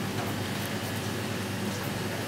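Feathers being plucked by hand from a partridge in short, sharp pulls, set against a steady background rush of noise that is the loudest thing heard.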